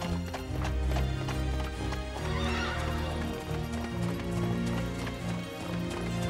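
Galloping horse hooves, a cartoon sound effect, with a horse whinnying, over background music.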